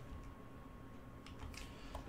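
Quiet room tone in a pause between spoken sentences, with a faint steady hum and a thin high tone, and a few faint clicks in the second half.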